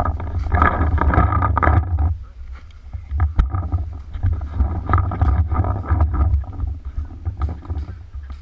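Rumbling wind and movement noise buffeting an action camera's microphone, with rustling and crunching from moving over dry twigs and pine litter in two spells, and one sharp click about three and a half seconds in.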